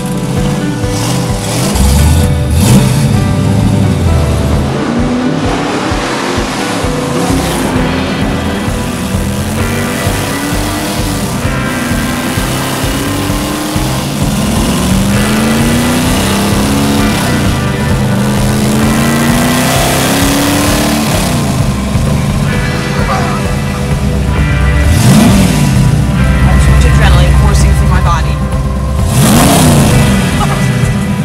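Chevy 350 small-block V8 in a 1978 Chevy Nova, breathing through Hedman headers and a 2½-inch exhaust, pulling through the gears of its four-speed manual: the pitch climbs again and again and falls back at each shift. Near the end it is revved up and back down twice over a deep idle rumble.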